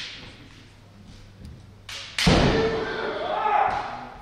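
Naginata and shinai in a bout: a light knock just before two seconds in, then a loud crack with a foot stamp on the wooden floor as a strike lands, followed by a long shouted kiai of about a second and a half.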